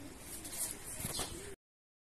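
Faint background with a bird calling once near the end, then the sound cuts off suddenly to silence.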